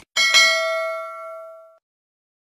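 A notification-bell 'ding' sound effect for a subscribe animation. It comes just after a short click, is struck twice in quick succession, and rings bright and clear, fading away over about a second and a half.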